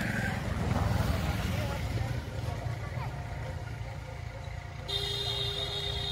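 Tractor diesel engines running steadily at work, a low, even engine note. A steady high-pitched tone joins about five seconds in.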